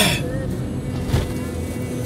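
Steady low rumble of road and engine noise inside a moving car, with a sharp rushing burst right at the start and a weaker one about a second in.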